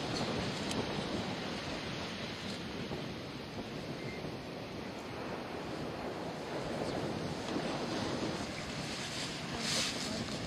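Steady wash of ocean surf on a beach, with wind buffeting the microphone. There is one short click just before the end.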